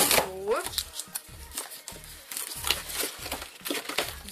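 Cardboard box and its packing tape being picked and scraped at with a pointed tool while someone tries to open it: irregular small scratches, clicks and crinkles. A short voiced hum rising in pitch comes just after the start.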